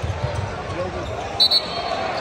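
Basketball arena crowd chatter during live play, with a ball bouncing on the hardwood court. About a second and a half in come two short high-pitched squeaks, the loudest sound here.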